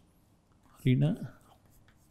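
Chalk writing on a blackboard: faint scratches and taps of the chalk, with a short spoken word about a second in.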